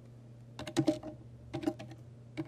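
Typing on a computer keyboard: a quick run of keystrokes about half a second in, then a few more near the end, as a name is typed in.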